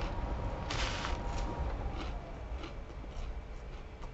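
Crunchy seasoned french fries being chewed: a loud crunch just under a second in, then a scatter of fainter crunches, over a low steady hum.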